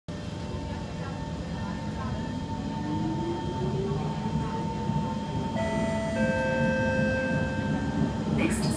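Kawasaki C151 metro train heard from inside the car as it accelerates away, with a steady running rumble under a motor whine that climbs in pitch. A few more steady whining tones join about two-thirds of the way in.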